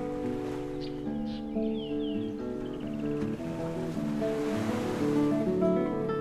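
Classical guitar playing a slow fingerpicked melody over ocean waves. A wave washes in louder about four to five seconds in, then fades.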